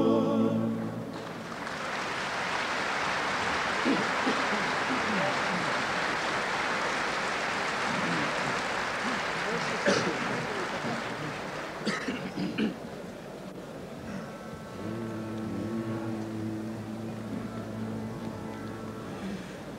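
A male a cappella klapa choir's held final chord ends about a second in, and audience applause follows for about ten seconds before fading. About three-quarters of the way through, the choir begins a new sustained chord.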